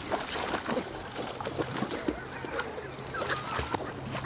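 Dogs splashing and paddling in shallow river water at the bank, a run of short splashes, with a few brief animal calls mixed in, one about three seconds in.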